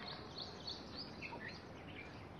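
Small birds chirping in woodland: a quick run of short, high chirps, several a second, over a faint steady hiss of outdoor background noise.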